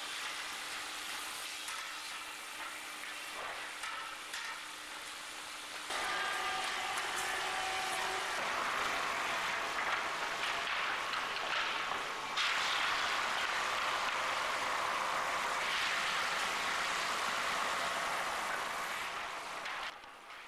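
Sawmill machinery running: a continuous, even mechanical hiss with a faint steady hum, stepping suddenly louder and brighter about six seconds in and again about twelve seconds in.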